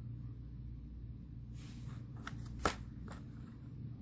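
Handling noise of plastic N-scale model train cars being moved by hand on a cardboard box insert: a brief soft rustle and a few small clicks, the sharpest a little under three seconds in, over a low steady hum.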